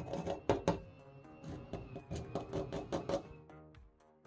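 A pen tip tapping on hardened two-component glass-fibre filler paste, a run of quick, slightly uneven clicks that shows the filler has fully cured; the tapping stops about three seconds in. Background music plays throughout.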